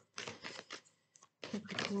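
A deck of fortune-telling cards being shuffled by hand: a quick run of papery rustles and slaps in the first second, a short lull, then more shuffling as the voice comes back near the end.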